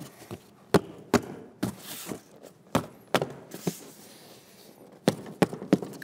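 A hammer tapping a cardboard template against a car seat's mounting studs to punch holes in it: a series of sharp, irregular knocks.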